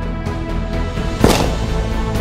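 Background music with a regular beat, cut by a single gunshot sound effect, a sniper-rifle shot, a little over a second in that rings out briefly.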